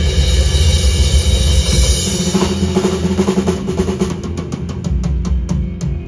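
Live rock band playing with drum kit and bass; through the second half the drums take a fill, a run of quick sharp strikes leading into a short break.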